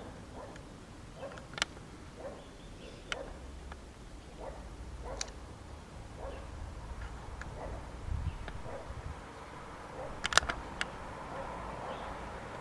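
Outdoor ambience of faint, short bird calls repeating every second or so over a low rumble. A few sharp clicks stand out, the loudest cluster coming near the end.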